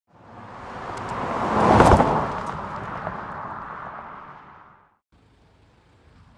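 Intro sound effect: a whoosh that swells to a sharp hit about two seconds in, then fades away over the next few seconds.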